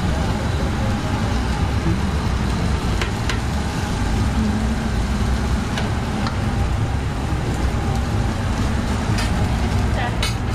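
Steady low drone of a food truck kitchen's running equipment, with a few light clicks of tongs and utensils about three, six and nine seconds in.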